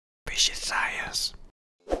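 A brief breathy whisper lasting a little over a second.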